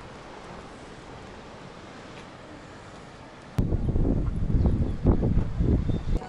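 Faint steady outdoor background noise, then a little past halfway a sudden loud, gusting rumble of wind buffeting the microphone.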